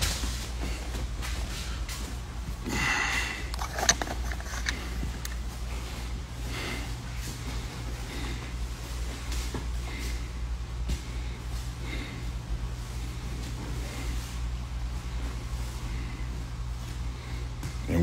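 Training-hall ambience during grappling drills: a steady low hum under faint voices, with a sharp knock about four seconds in.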